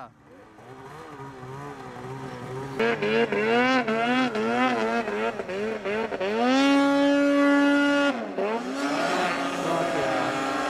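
Snowmobile engine revving hard in deep powder. It starts faint, then its pitch rises and falls quickly with repeated throttle blips from about three seconds in. It then holds high and steady for about a second and a half, drops briefly near eight seconds and climbs again.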